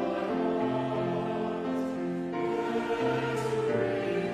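Mixed church choir singing in harmony with grand piano accompaniment, long held chords changing every second or so.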